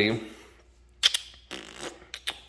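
The end of a man's spoken word, then a pause with a few short, light clicks: two sharp ones about a second in and fainter ones near the end.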